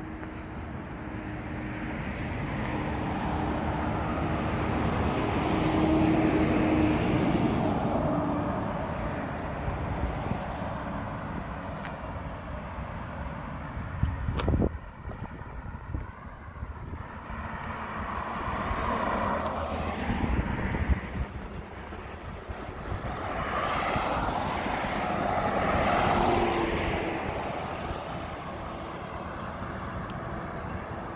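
Cars passing on the street one after another, each a swell of engine and tyre noise that rises and fades: three passes, loudest about six seconds in, around twenty seconds and around twenty-five seconds. One sharp knock about halfway through.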